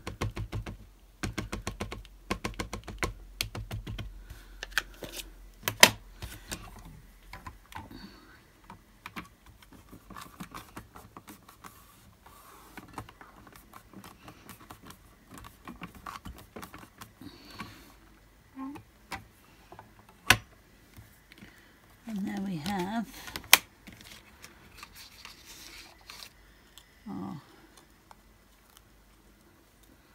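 An ink pad tapped rapidly and repeatedly onto a rubber stamp for the first few seconds, then scattered handling clicks and a few sharp knocks as the stamps and card are worked in a stamping platform. A brief murmur of voice comes about two-thirds of the way through.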